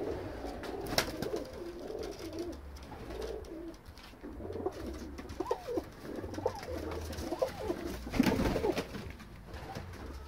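Pakistani teddy pigeons cooing, a run of low wavering coos, with a brief louder flurry of wingbeats about eight seconds in.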